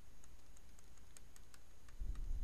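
Faint, irregular clicks of a pen stylus tapping on a tablet screen, about seven in two seconds, as dashes of a line are drawn one by one, over a low steady hum.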